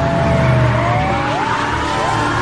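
Police cars skidding, their tyres squealing in wavering, gliding pitches over the low rumble of their engines.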